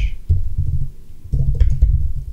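Typing on a computer keyboard: irregular keystrokes heard mostly as dull low thuds, with a few faint clicks near the end.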